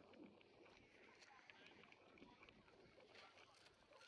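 Near silence: faint outdoor background with distant, indistinct voices.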